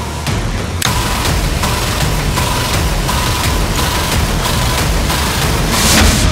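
Game-show suspense sound effect: a loud, noisy wash with a faint steady tone and a regular pulse under it, building to a burst near the end as the cable-cut result is revealed.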